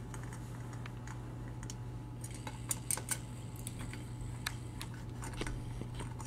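Scattered light metallic clicks and ticks of a 4 mm hex key working the six bolts on an aluminium oil-centrifuge bowl, over a steady low hum.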